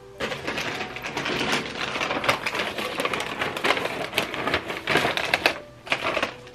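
Plastic bag of salt being handled, giving a dense, irregular crinkling and crackling that starts just after the beginning and stops shortly before the end.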